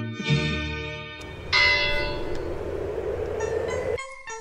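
The song's music cuts off about a second in, and a single church bell stroke follows, its overtones ringing and slowly dying away.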